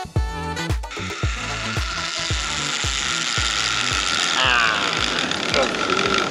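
Zipline trolley pulleys running along the steel cable: a steady high whirring hiss that starts about a second in, over background music with a steady beat.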